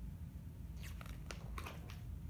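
A picture book's page being turned by hand: a few short papery crackles and rustles in the second second.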